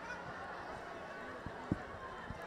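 Faint stadium ambience with horns being blown in the stands, carried from a distance, and a short thump near the end.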